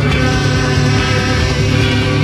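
1960s psychedelic rock song in a stretch without singing, guitar-led band music at a steady loud level.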